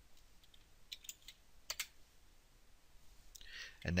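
Faint computer keyboard typing: a scatter of light key taps while a password is entered, with two sharper clicks close together a little under two seconds in.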